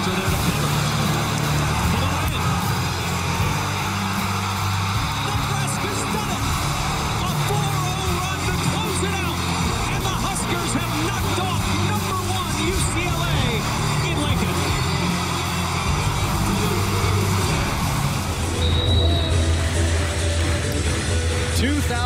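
Background music with a steady bass line laid over an arena crowd cheering and roaring.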